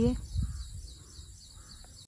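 Quiet rural outdoor ambience by open crop fields: a brief low rumble just after the start, then a faint steady background hiss.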